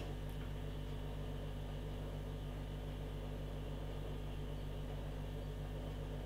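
Steady low electrical hum and faint hiss of room tone, unchanging, with no distinct sounds.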